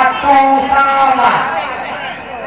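Speech: the match commentator calling out in drawn-out, unclear syllables, fading toward the end.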